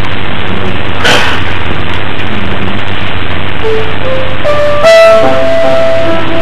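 A child begins playing a grand piano: single notes start about three and a half seconds in, and a louder chord follows near the end. Steady hiss and hum sit under everything, with a brief noise about a second in.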